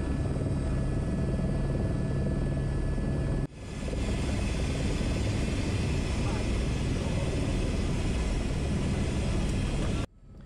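Airbus H125 single-turbine helicopter heard from inside the cockpit during a low approach to a snow landing, its turbine and rotors running with a loud, steady drone and a thin high whine. The sound cuts off abruptly about three and a half seconds in and comes straight back at the same level.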